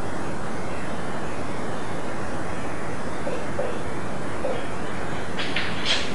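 Steady background hiss with a marker writing on a whiteboard: a few faint strokes in the middle, then a quick run of short squeaky strokes just before the end.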